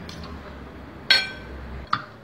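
A metal fork and knife set down in a glass bowl: one sharp clink with a short ring about a second in, then a lighter click near the end.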